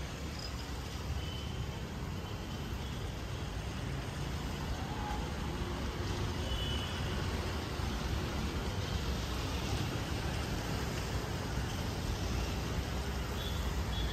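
Street traffic noise: a steady rumble of passing road vehicles, with a few faint short high tones in the distance.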